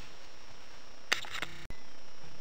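Quiet room tone with one short click, ringing briefly, a little over halfway through. An instant later the sound cuts out completely for a moment at an edit, then the background comes back.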